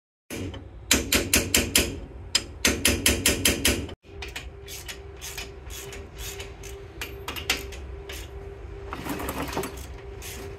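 Rapid hammer taps on metal, about five or six a second in two quick runs, then after a break quieter scattered clicks of metal parts over a faint steady hum.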